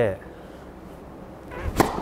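Tennis serve: a racket swishing through the air with a rising whoosh, then striking the ball with one sharp crack near the end.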